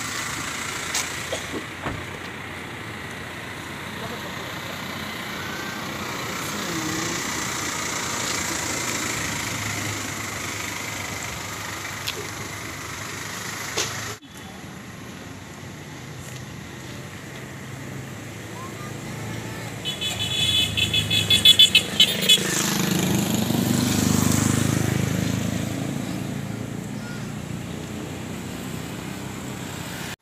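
Street traffic with voices nearby, then a vehicle horn sounding a quick series of short beeps, followed by a motor vehicle passing that swells and fades away over a few seconds.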